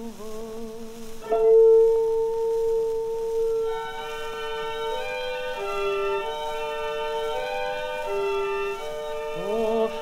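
Orchestral accompaniment on a 1927 78 rpm opera record, the sound cut off at the top: after the tenor's last note fades, the orchestra enters about a second in with a held note, then a slow line of steady sustained notes stepping up and down. Near the end the tenor's voice slides back in.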